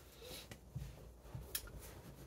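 Faint handling sounds of a quilted cotton table runner being turned around by hand: a few soft rustles and light knocks over a quiet room hum.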